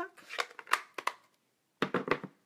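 A few light, sharp taps and clicks of hands handling rubber stamping supplies and cardstock on a tabletop.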